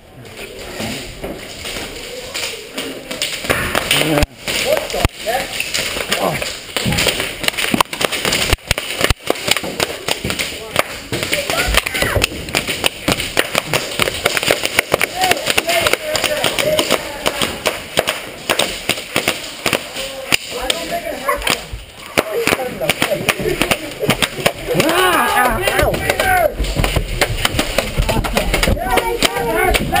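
Airsoft guns firing in a dense run of sharp clicks and snaps, mixed with knocks and thumps of movement on wooden floors and stairs. Voices shout a few seconds before the end.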